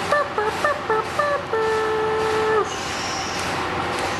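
A short tune of quick pitched notes, then one long held note that dips at its end, over a steady machinery hum.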